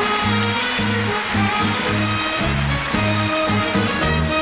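Band music with no singing: guitars over a steady bass line that pulses about twice a second.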